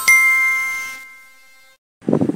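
Edited-in subscribe-button sound effect: a bright bell-like ding with several tones ringing together. It fades away over about a second and a half and then cuts to dead silence.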